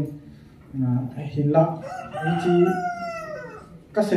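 A rooster crowing once, a long call that slides down in pitch over about two seconds, heard behind a man's voice.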